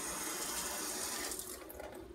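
Kitchen tap running water into the sink, a steady hiss that starts suddenly and weakens after about a second and a half as it is turned down.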